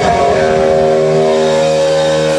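Live rock band with an electric guitar holding one steady, sustained chord at high volume.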